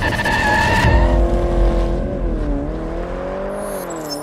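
Car tyres squealing in a burnout for about the first second, then a car engine revving, dipping and rising in pitch as it slowly fades, with a brief high shimmer near the end.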